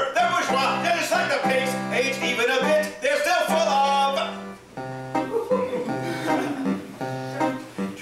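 Electronic keyboard playing an instrumental passage of chords and melody between sung verses. It dips in loudness about halfway through.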